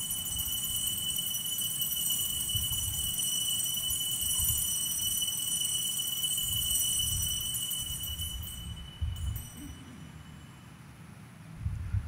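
Altar bells (sanctus bells) ringing in a sustained, shimmering peal at the elevation of the consecrated host, cutting off about nine seconds in, with a brief last jingle just after.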